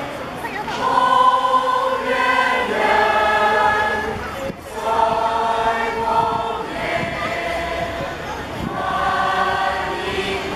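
A group of carolers singing a Christmas carol together in long, held notes, with a brief break about four and a half seconds in before the next phrase.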